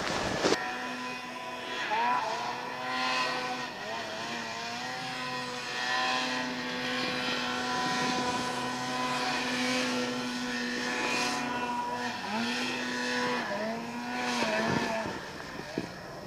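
Snowmobile two-stroke engine running at high, fairly steady revs. Its pitch dips briefly and picks back up several times, twice in quick succession near the end.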